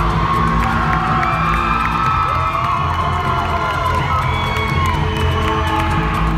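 Dance-routine music playing loud and steady, with a crowd of spectators cheering and whooping over it throughout.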